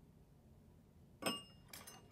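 Small metal hand tools clinking on the workbench: a sharp metallic clink with a short ring about a second in, then a few lighter clicks near the end.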